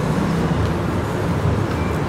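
A steady low rumble, like road traffic or a running engine.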